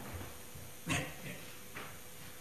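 A man's brief, choked sobs as he breaks down mid-sentence: a few short catches of breath and voice, the strongest about a second in.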